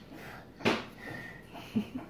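A young girl blowing a kiss: one short breathy puff from the lips about half a second in, followed by a brief vocal sound near the end.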